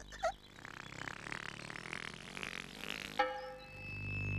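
A soundtrack effect: a soft hiss that slowly rises for about three seconds, then gives way to sustained musical notes near the end.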